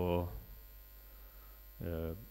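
A man speaking Basque into a microphone stops for about a second and a half, then starts again near the end. In the gap a steady low electrical mains hum is left.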